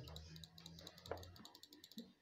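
Near silence with faint, rapid light clicking and a faint low hum in the first second.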